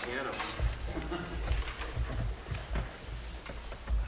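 Room noise of a seated ensemble between pieces: faint murmured voices, rustling and shuffling, with repeated low thumps.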